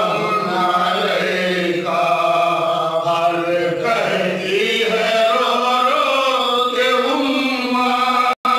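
A voice chanting a devotional Islamic recitation in long, drawn-out notes, the melody shifting every couple of seconds.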